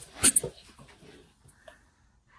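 Two cats fighting: a sharp hissing spit, two quick bursts about a quarter second in, then faint scuffling.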